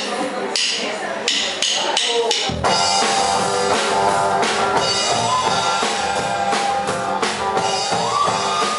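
A voice speaking over a microphone with a few sharp taps, then about two and a half seconds in a live band starts a rock song: drum kit, bass guitar, acoustic guitar and flute playing together.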